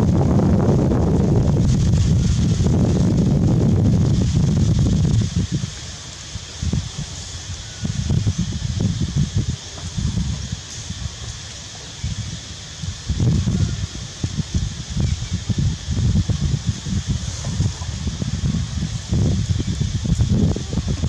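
Wind buffeting the microphone: a heavy, continuous rumble for about the first five seconds, then coming and going in uneven gusts, over a steady high-pitched hiss.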